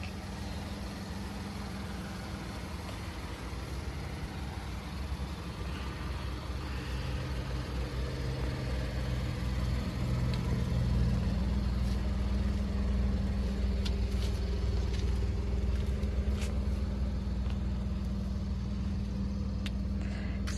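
A vehicle engine idling with a steady low hum, growing louder through the middle, with a few faint ticks.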